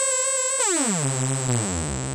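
Korg Electribe 2 sawtooth synth voice with heavy glide: a held note slides smoothly down about two octaves, starting about half a second in. Its chorus effect is turned up until the sound is dissonant.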